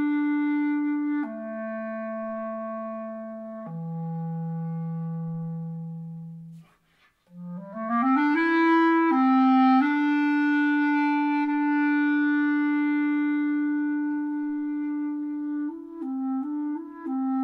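Unaccompanied clarinet playing held notes that step down to a long low note, which fades away. After a brief silence, a quick rising run climbs to a long sustained note, and short, quicker notes follow near the end.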